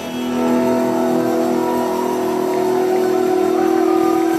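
Loud electric guitar holding one sustained chord, its notes ringing steadily with the drums dropped out.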